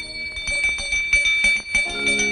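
Film soundtrack music led by bells: a steady high ringing with quick, repeated jingling strikes.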